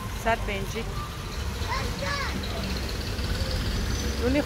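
Short bursts of voices with a steady low rumble underneath, like market traffic: two brief voice fragments, the first starting with a short loud peak.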